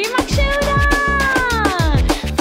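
Birthday song music with a steady drum beat, carrying one long note that slowly falls in pitch.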